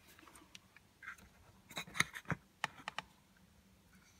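Light plastic clicks and taps from handling a Samsung dishwasher's drain pump and its plastic housing, just removed from the sump. A handful of sharp clicks come bunched near the middle.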